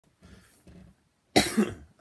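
A man coughs twice in quick succession a little over a second in.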